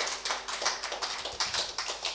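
Audience applauding after a song: a dense, uneven patter of separate hand claps.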